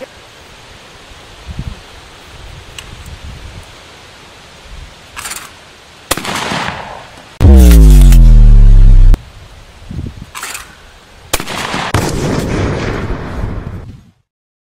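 12-gauge Benelli Supernova pump shotgun firing at clay targets: a sharp shot about six seconds in and another about eleven and a half seconds in, followed by a noisy tail. Between them comes a very loud, drawn-out, distorted boom lasting under two seconds, falling in pitch.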